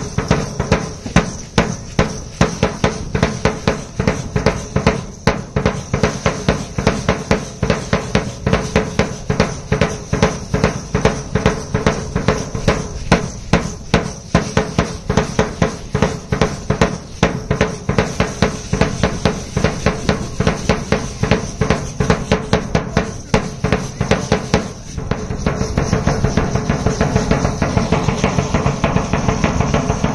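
A marching drum beaten with a single mallet in a steady, quick dance beat for matachines dancers. About 25 seconds in the beat becomes denser and more continuous.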